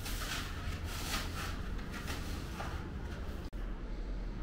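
Cured expanding foam being cut and scraped away by hand from a terrarium's back wall: a series of rasping strokes, about one a second, over a steady low hum. It breaks off suddenly near the end.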